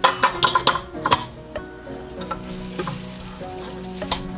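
Stainless steel stand-mixer bowl clinking and knocking against the mixer as it is handled and fitted in place, several sharp knocks in about the first second, then lighter scattered taps. Background music with steady held tones plays underneath.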